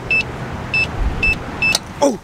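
Electronic keypad of a geocache lock box beeping four times in quick succession as a code is punched in, each press a short, identical high beep. A low bump comes about halfway, over a steady rush of background noise.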